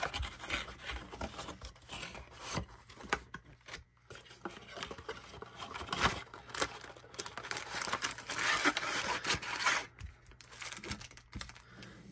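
Cardboard trading-card blaster box being opened by hand: irregular tearing, scraping and rubbing of card stock, with the foil card packs rustling as they are handled, and brief pauses about four seconds in and near the end.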